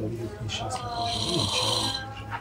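A man's voice murmuring indistinctly, quieter than the reading around it.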